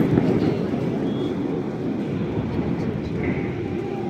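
Rumble of a large distant fireworks burst, its booms rolling and echoing off the surrounding buildings and slowly fading as the burst dies away.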